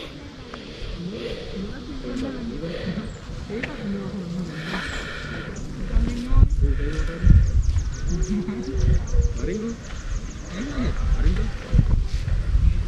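Wind gusting on the microphone in heavy low rumbles from about halfway through, over faint voices of people talking in the background.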